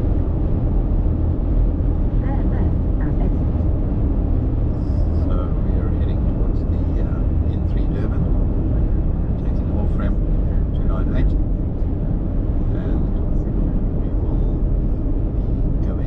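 Steady low road and engine rumble of a car cruising at highway speed, heard from inside the cabin.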